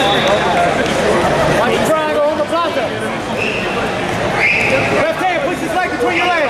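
Overlapping shouted voices of coaches and spectators in a busy competition hall, no single voice clear. Two brief, high, steady tones stand out, about halfway through and shortly before the end.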